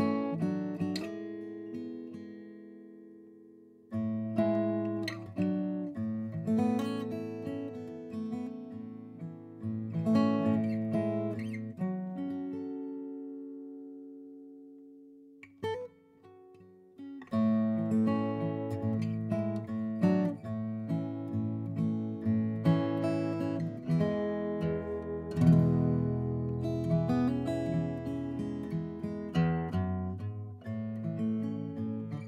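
Hatcher Penelope 12-fret acoustic guitar, olivewood back and sides with an Italian Alpine spruce top, played fingerstyle: picked notes and chords left to ring. About halfway through a chord fades almost to silence before the playing picks up again, busier.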